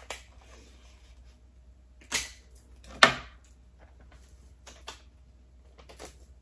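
Clear adhesive tape pulled off the roll in a short rasp, then torn off with a sharp snap about three seconds in, followed by a few light handling clicks.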